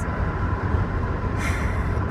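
Steady low rumble inside a moving truck's cab: engine and road noise while driving.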